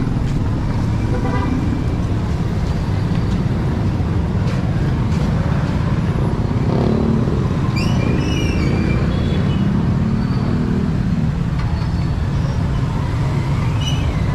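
Street traffic: a steady low rumble of cars and motorcycles, with one engine passing close, its pitch rising and then falling, from about six to eleven seconds in.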